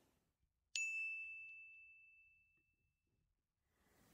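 A single high, bell-like chime sound effect, struck once under a second in and ringing away over about two seconds, marking the start of a new section.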